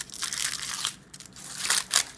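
Foil wrapper crinkling and crackling as it is peeled off a chocolate egg, in several bursts with a brief lull in the middle.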